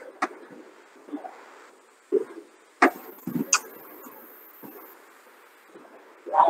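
A few sharp clicks and knocks, two close together at the start and the loudest near the middle, with faint low thuds between them, over a video-call line.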